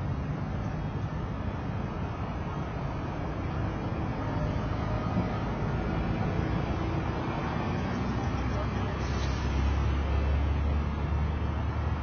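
City street traffic: a steady rumble of passing vehicles, with a louder low engine drone setting in about eight and a half seconds in and holding to the end.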